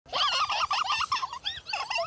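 A high, rapidly warbling voice: a long run of quick wavering calls, then a few shorter ones near the end.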